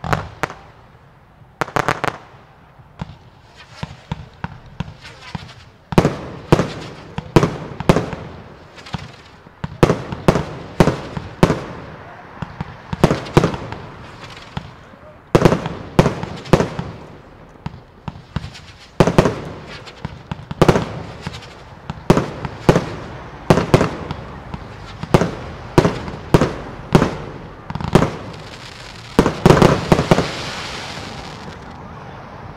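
Aerial fireworks firing and bursting in a rapid series of sharp bangs. They are sparse and quieter for the first few seconds, then from about six seconds in come louder and closer together, about one to two a second.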